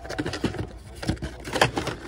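Hands rummaging through a cardboard case of carded Matchbox die-cast cars: cardboard and plastic blister packs scraping and clicking irregularly, with sharper clicks about half a second and one and a half seconds in.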